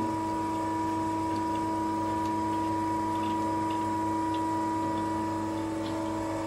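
Stainless steel coil winding machine standing powered with a steady, even hum, with a few faint light clicks of metal parts being handled.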